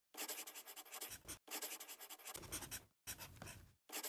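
A marker pen scratching across a drawing surface in quick strokes. It comes in three runs broken by brief pauses.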